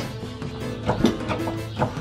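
Background music with held notes.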